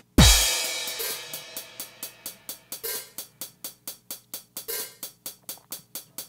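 Playback of an electronic drum pattern from a DAW: a deep kick and a crash cymbal just after the start, then a steady run of drum-machine hi-hat ticks, about five a second, over faint sustained tones.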